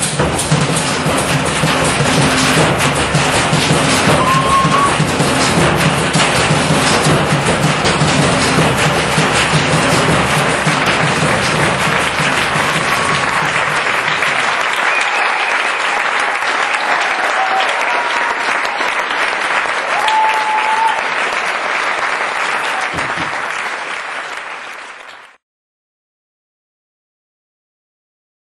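An audience applauding and cheering, with a few short whistles, as a piece of music ends. Low held notes from the music linger under the clapping for about the first half. The applause then continues on its own and cuts off suddenly just before the end.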